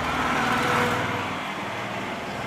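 A motor vehicle passing by, its engine hum and road noise swelling and then fading.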